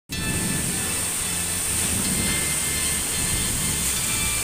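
Heavy rain pouring steadily with gusting wind: a dense, even hiss with a low rumble of wind on the microphone.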